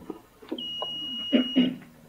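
A single steady, high-pitched electronic beep lasting about a second, starting about half a second in.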